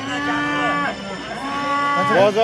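Young black-and-white bulls mooing: two short, steady moos less than a second long, the second about half a second after the first.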